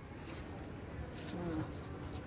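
Quiet outdoor background with a steady low hum, and a brief faint voice about one and a half seconds in.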